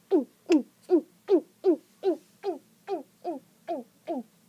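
A girl's voice making quick, repeated gulping noises for a doll drinking, about three a second. Each is a short voiced call falling in pitch, and they grow softer as they go on.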